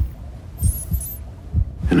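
Low thudding pulses from a trailer's score sound design, a few a second, with faint high electronic beeps around the middle.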